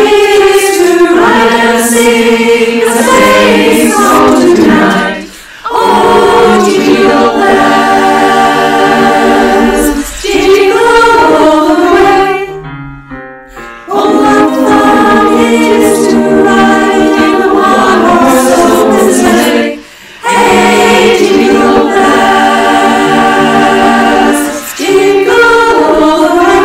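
Women's choir singing in close harmony, long phrases of held chords separated by short pauses.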